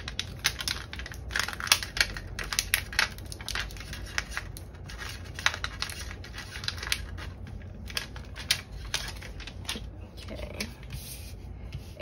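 Irregular crackling and clicking of plastic as hands rub a cut vinyl letter decal down through clear transfer tape onto a plastic binder envelope and lift the tape away.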